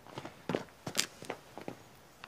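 Footsteps: a string of short, light, irregular steps.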